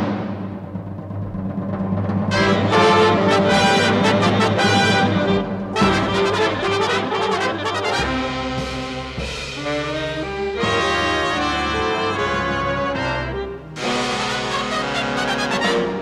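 Jazz big band playing full-ensemble brass chords over drums, opening on a sudden loud chord and moving through short phrases that change every few seconds.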